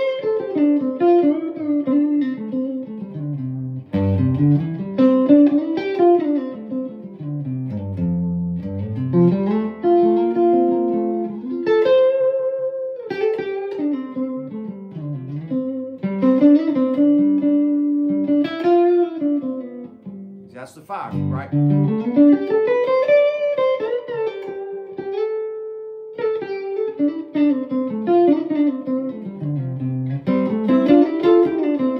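Electric guitar, a Telecaster-style solid body, playing single-note melodic phrases over a C, F, G chord progression. The lines walk up and down the major scale in runs of a few seconds each, with a short break about two thirds of the way through.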